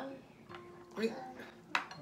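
Tableware at a meal: one sharp clink of a utensil against a ceramic bowl or plate near the end, with a brief voice sound about a second in.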